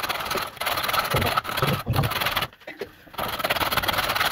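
Carrot being grated on a metal box grater: repeated rasping strokes against the steel teeth, with a short pause a little before three seconds in.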